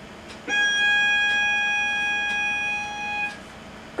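A violin playing one bowed note, G sharp with the second finger on the E string, held steady for about three seconds, starting about half a second in. It is heard played back through a computer's speaker.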